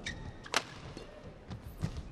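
Badminton rackets striking a shuttlecock during a rally: a faint sharp hit at the very start and a loud, crisp one about half a second in. Softer thuds follow, in the second half.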